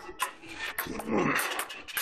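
Table-tennis ball clicking sharply off paddles and the table during a rally, the hits a fraction of a second apart. About a second in comes a louder short cry or whine with a wavering pitch, lasting about half a second.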